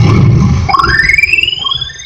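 Dance music in which the beat drops out and a synthesizer sweep rises steadily in pitch over about a second, fading near the end: a riser effect bridging into the next song of the dance mix.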